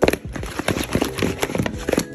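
Raw seasoned chicken pieces tumbling and knocking against a plastic bowl as it is shaken to coat them, a quick, uneven run of thuds and clatters.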